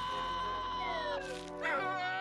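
A man's long, steady cartoon scream, breaking off a little past a second in, with brief falling and rising glides of cartoon music after it.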